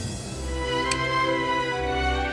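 Background drama score music: held notes from string instruments over a deep bass note, growing louder.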